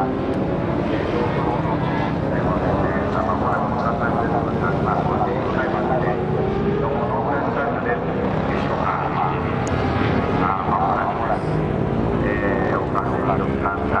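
Suzuki GSX1400's inline-four engine revving up and falling back again and again, with short throttle blips between the rises, as the motorcycle is ridden through tight low-speed turns.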